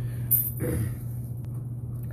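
Steady low machine hum, with a sharp click about a third of a second in and a brief rustle just after half a second.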